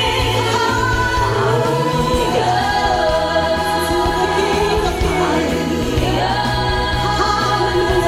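Gospel worship song: women's voices singing a drawn-out "Hallelujah" over an instrumental accompaniment whose low bass notes hold and change every second or two.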